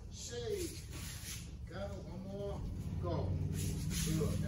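Indistinct talking from a few people, heard as short, separate phrases, over a steady low hum.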